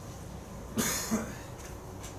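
A person coughing, two quick coughs close together about a second in, over a low steady room hum.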